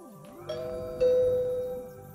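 Two-tone doorbell chime: a higher ding about half a second in, then a louder, lower dong that rings and fades out, over light background music.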